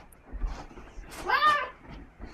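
A child's short, high-pitched squeal about one and a half seconds in, with a few dull thumps shortly before it.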